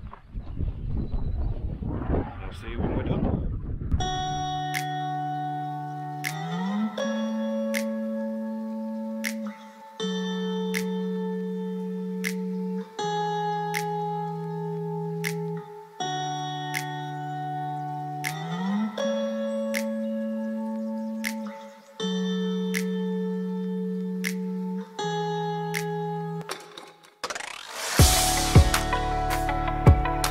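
Wind rushing on the microphone for the first few seconds, then background music: slow, sustained synth chords that change every two to three seconds, with light regular ticks over them.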